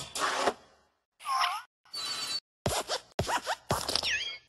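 A string of short cartoon sound effects for a hopping animated desk lamp: a scratchy burst, a squeak that dips and rises, a brief high beep, then several quick rising squeaks with thuds.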